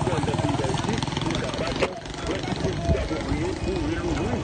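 Street noise heard from a moving vehicle: overlapping voices of people along the road over a running motor-vehicle engine, with one sharp click a little under two seconds in.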